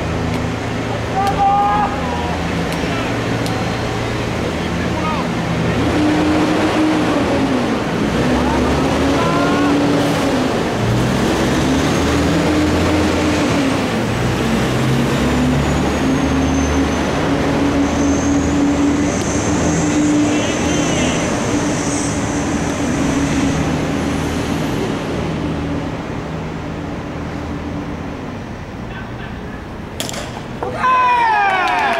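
An engine running steadily, its pitch slowly rising and falling, with a thin high whine that glides up and down in the middle stretch.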